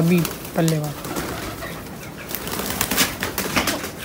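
Domestic pigeons moving about on a concrete rooftop: a run of light clicks and rustles in the second half, after a man's voice briefly at the start.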